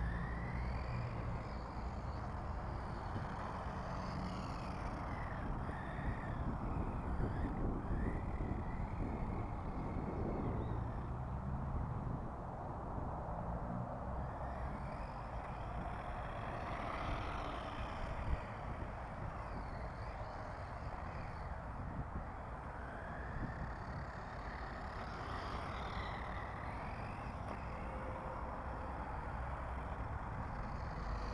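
A small battery-powered RC car (2S LiPo) driving about on concrete, heard under a steady low rumble like wind on the microphone, with birds chirping on and off and an occasional knock.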